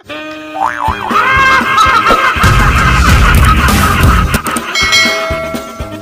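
Channel intro jingle: music that opens with a sound effect swooping up and down in pitch about a second in, swells into a loud stretch with heavy bass in the middle, then drops to lighter music with a steady beat near the end.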